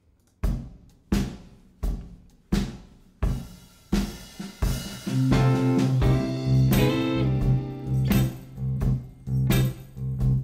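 Blues backing track in C. For the first five seconds drums play alone, with a stroke about every 0.7 s. About five seconds in, a bass line and electric guitar come in, the Telecaster comping major sixth chords over the groove.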